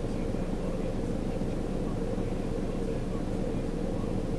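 A steady low rumble of vehicle engines running, even in level throughout.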